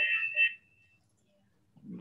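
A high, steady ringing tone from audio feedback on the video call, left hanging after the speaker's words and dying out about a second in. Near silence follows until speech resumes near the end.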